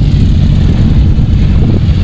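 Wind buffeting the camera microphone: a steady, loud, low rumble with no pitch to it.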